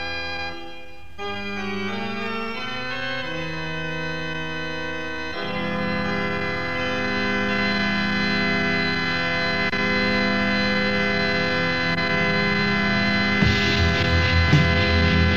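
Organ-like keyboard playing slow sustained chords, changing every second or two in the first few seconds, then holding a fuller, swelling chord from about five seconds in. Near the end the band comes in with drums and guitar, in a melodic doom/death metal demo recording.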